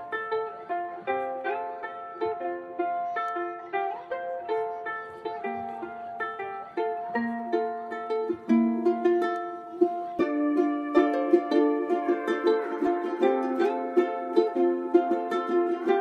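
Ukulele instrumental in D minor: a plucked ukulele melody of short, separate notes, growing fuller and louder about ten seconds in.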